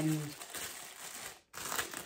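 Plastic bag crinkling as it is handled, stopping abruptly about a second and a half in.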